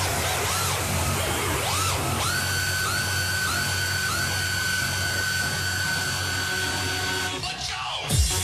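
Trance music in a build-up: rising synth sweeps give way to a held high synth chord, broken a few times, over a steady low pulse. Near the end a falling sweep leads into the drop.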